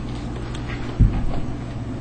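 Steady low hum of a custom-built PC's large cooling fans, with one dull thump about a second in.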